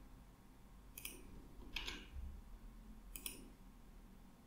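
A few faint computer mouse clicks, short and sharp, roughly a second apart, one of them a quick double click.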